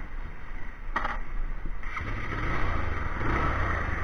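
A motor vehicle engine running nearby, with a short knock about a second in and a low hum that grows louder from about two seconds in.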